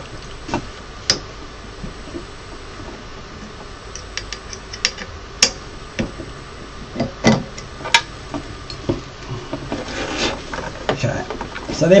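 Scattered small metal clicks and ticks of a 3 mm Allen key working the screws on a resin printer's build-plate bracket as they are loosened for bed levelling, with a brief rubbing near the end.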